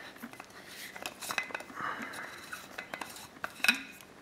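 Black plastic cap being unscrewed from a stainless steel Klean Kanteen Classic water bottle: threads scraping against the steel mouth, with small clicks and clinks and a sharper click near the end.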